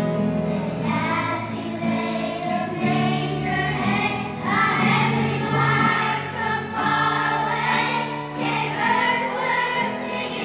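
Children's choir singing a song, many young voices together, with low held notes underneath.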